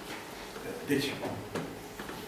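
A man's voice saying a single word in a small room, followed shortly by a light click.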